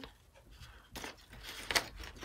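Pinking shears cutting thin brown paper: about three short snips, the last one, near the end, the loudest.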